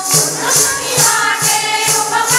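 Hindu devotional bhajan sung by voices to a steady beat, with jingles shaken about twice a second.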